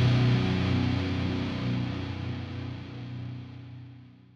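The closing chord of a hardcore song, played on distorted electric guitar, held and fading steadily away to silence.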